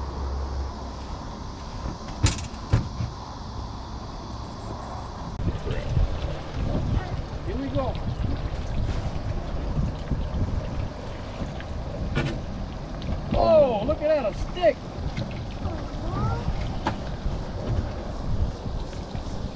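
Wind buffeting the microphone on a small aluminum boat, with knocks on the hull and water splashing as a crab ring net is hauled up by its rope. Short wordless high vocal sounds come in about two-thirds of the way through.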